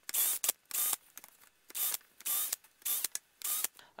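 Cordless drill run in a string of short bursts, each well under half a second, cutting countersinks into pre-drilled screw holes in a pine stick.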